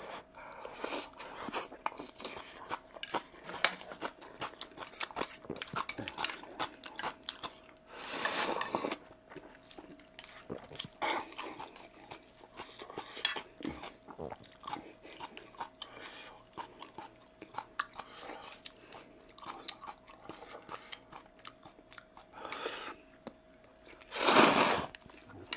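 Close-miked mukbang eating of kimchi ramen with dumplings and ham: steady wet chewing and lip smacks. A louder, second-long slurp comes about eight seconds in, and another near the end.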